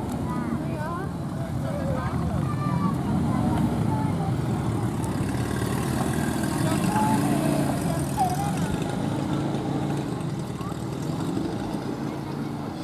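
An engine running steadily, with people talking in the background.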